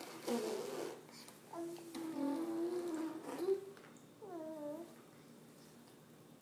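A baby babbling: a short breathy burst at the start, then a long held vocal sound and, about four seconds in, a short swooping call.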